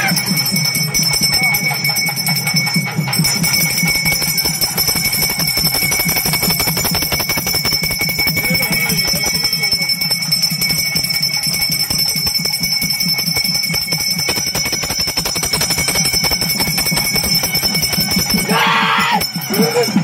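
A brass puja hand bell rung rapidly and without pause, a continuous jangling with a steady high ring over it. Shortly before the end a voice rises briefly over it.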